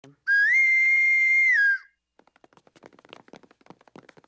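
A whistle blown in one long, loud note that steps up in pitch, holds, then drops back down, lasting about a second and a half. It is followed by faint, rapid clicking.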